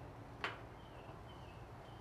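A single faint click about half a second in as a Blackstone griddle's burner control knob is turned, against a quiet background.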